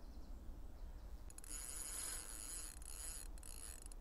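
Faint high, fine-grained whirring of a fishing reel, starting about a second in and running for about two and a half seconds with a short break near the end, as the rod is played into a just-hooked carp.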